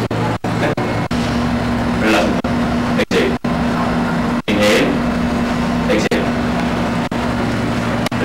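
Indistinct voices in a room over a steady low hum. The sound cuts out for an instant several times.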